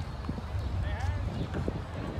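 Indistinct voices over a steady low rumble, with a few light knocks like hoof clops.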